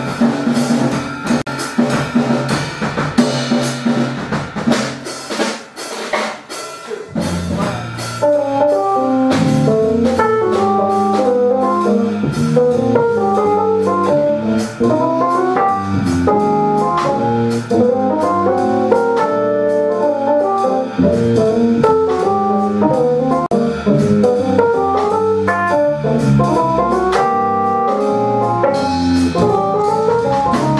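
Jazz trio playing live: drum kit, electric bass and keyboard. The first several seconds are led by busy drumming. From about seven seconds in, the keyboard plays running arpeggiated lines over bass and drums.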